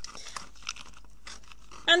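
A plastic wire crinkler tool handled by fingers, the tape stuck on its underside crinkling: quiet, scattered crackles and small clicks.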